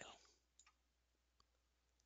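Near silence: room tone, with two very faint short clicks, one about half a second in and one near the middle.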